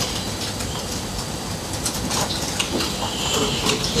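Laptop keyboard typing: a handful of scattered keystroke clicks in the second half, over a steady hiss of room noise.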